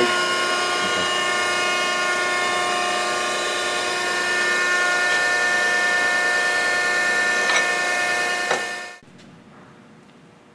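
Mattison 16" x 48" surface grinder running, a steady multi-tone machine whine, with a few short knocks as a steel block is shoved about on its energised magnetic chuck. The sound cuts off abruptly about nine seconds in.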